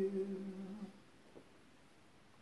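A man humming a final held note that fades out within the first second, followed by a faint click and near silence.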